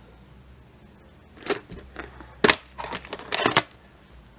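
VHS tape's plastic case being opened and the cassette taken out: a few sharp plastic clicks and knocks, the loudest about two and a half seconds in.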